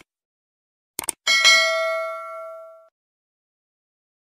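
Subscribe-button sound effect: two quick mouse clicks about a second in, then at once a bright notification bell ding that rings on several pitches and fades away over about a second and a half.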